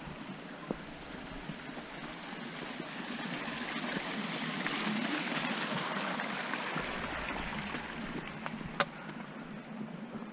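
Rushing water of a small forest stream, swelling to its loudest about halfway through and fading again as the walker passes it. Light footsteps on the trail run underneath, and there is one sharp click near the end.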